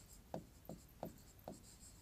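Faint pen strokes while writing on the board: four short scratches, about three a second.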